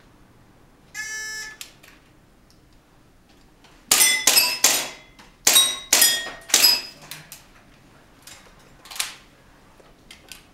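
Electronic shot-timer start beep about a second in, then an airsoft pistol firing a string of sharp shots in two quick groups, with a faint metallic ring in the hits. A few lighter clicks follow.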